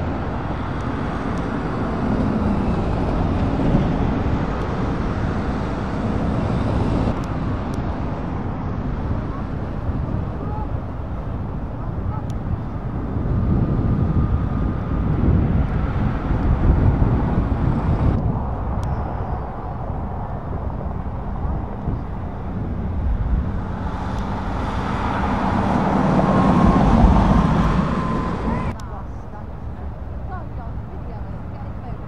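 Motorhomes and camper vans driving past on a country road, their engine and tyre noise swelling as each one approaches and passes. The sound shifts abruptly a few times between passes.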